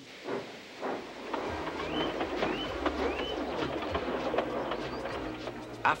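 Background music with the steady running sound of a model steam locomotive. Two short rising chirps come about two and three seconds in.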